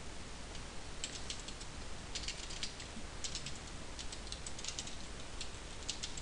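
Typing on a computer keyboard: several quick runs of key clicks, starting about a second in, over a steady low hiss.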